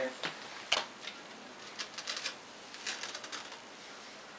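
Handling noise: scattered light clicks and taps, with one sharper click about three-quarters of a second in and small clusters of ticks around two and three seconds.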